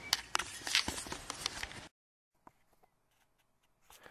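Handling noise from a hand at a compact camera: a quick run of clicks and knocks for about two seconds, then the sound cuts off to silence.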